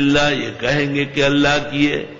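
A man chanting Quranic Arabic in a melodic recitation style (tilawat), holding long steady notes in short phrases.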